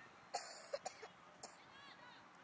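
A person close to the microphone coughing in a quick run of about five short coughs, the first the loudest, all within about a second.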